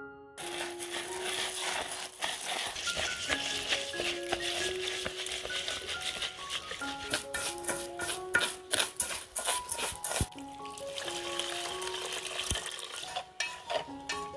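Raw rice grains being rubbed by hand and stirred with chopsticks in a pot, a steady grainy rustle with a run of quick ticks of the chopsticks against the pot midway. Piano music plays over it.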